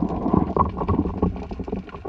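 Underwater noise picked up by a camera housing on a speargun: a low, uneven rush and gurgle of water moving past, with many small irregular clicks and knocks.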